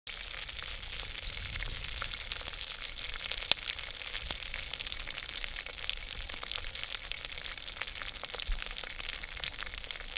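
Pork chicharon pieces deep-frying in a pot of hot oil: a steady sizzle packed with many sharp crackles and pops.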